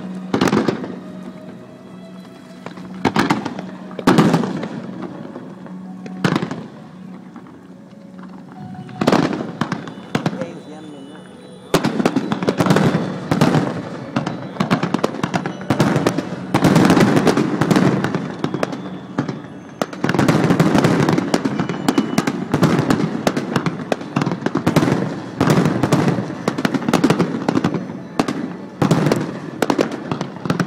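Aerial fireworks shells bursting. At first the bangs come singly, every one to three seconds; from about twelve seconds in they run together into a dense, continuous barrage of bangs and crackling.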